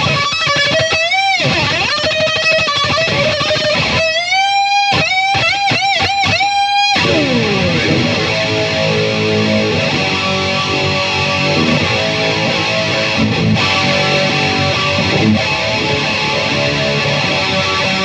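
V-shaped electric guitar played solo: lead lines with string bends and wide vibrato on held notes, then a note that drops in pitch about seven seconds in, followed by repeated chord riffing.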